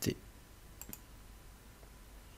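A computer mouse clicking twice in quick succession, about a second in.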